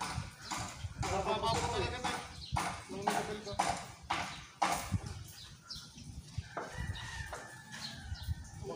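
Irregular knocks and taps from building work on a steel roof frame on scaffolding, about two a second, with faint voices of workers in between.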